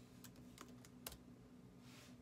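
Faint keystrokes on a computer keyboard: a few scattered key presses, the loudest about a second in, over a low steady hum.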